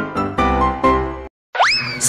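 Background music of struck, piano-like notes that cuts off abruptly about a second and a quarter in. After a brief dead silence, a quick rising glide sound effect sweeps up in pitch and levels off near the end.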